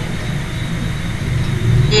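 A low, steady hum under a hiss of background noise, growing louder near the end, with a short click just before the end.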